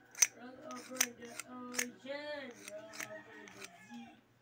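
A series of sharp clicks, about six, the loudest a quarter second in, from a small metal tube being handled and worked by hand. A voice is heard faintly in the background over them.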